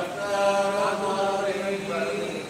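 Priests' mantra chanting during a temple abhishekam, recited on a near-steady pitch with long held notes.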